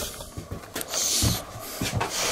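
Handling noise of a handheld camera being turned round, its microphone brushing against a shirt: a rustling burst about a second in, with a few light knocks.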